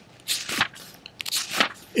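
Book pages being turned: several short papery rustles and crinkles close to the microphone.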